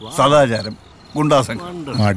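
A man speaking in two short phrases, with crickets chirping steadily in the background.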